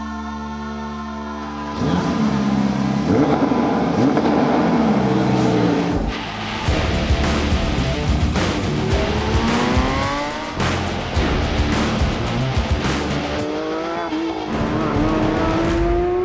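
Porsche 992 GT3 RS's 4.0-litre flat-six starting suddenly about two seconds in, then revving and accelerating hard in repeated rising sweeps of pitch, over background music.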